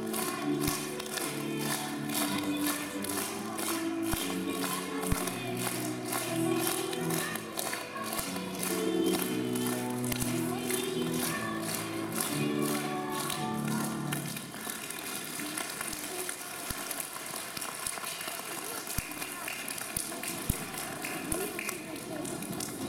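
A small children's choir singing a song with piano accompaniment, the song ending about two-thirds of the way through. Then an even spread of noise, typical of audience applause, with a few knocks of footsteps on the stage.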